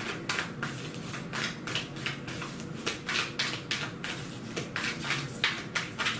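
A deck of tarot cards being shuffled overhand by hand: an uneven run of quick card snaps and slaps, about three or four a second.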